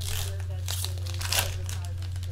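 Foil trading-card pack being torn open and crinkled by hand, a few rustling rips with the loudest about a second and a half in, over a steady low hum.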